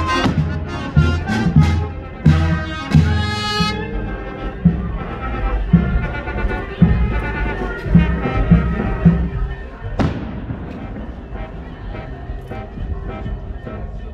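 Street brass band playing a tune: brass melody over a steady low beat, a little under two beats a second.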